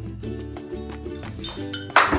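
Background music, with a few sharp glassy clinks near the end, the last the loudest: a thin stick striking a glass wine bottle.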